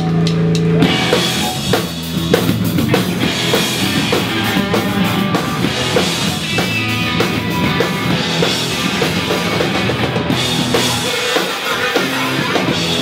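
Hardcore punk band playing live and loud. A held, ringing chord sounds for the first second, then drums, distorted guitars and bass come in together and drive on.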